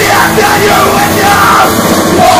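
Punk band playing live and loud: electric guitar and drums with yelled vocals.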